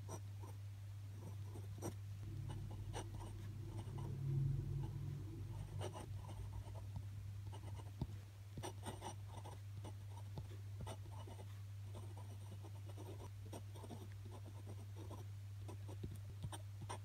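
Glass dip pen scratching over paper in short strokes and ticks, over a steady low hum. A louder low drone swells briefly about four to five seconds in.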